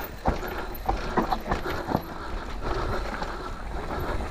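Electric mountain bike clattering over rough trail, with several sharp knocks in the first two seconds over a steady low rumble.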